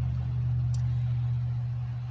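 A steady low machine hum with no change in pitch or level, and one faint tick about a third of the way in.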